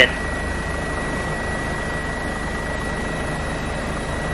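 Steady helicopter noise picked up on the crew's radio/intercom audio: an even hiss with a fast, low, regular throb and a thin, steady, high whine.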